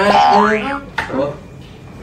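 Cartoon 'boing'-style comedy sound effect: a quick pitched tone that glides up and back down within the first second, followed by a sharp click about a second in.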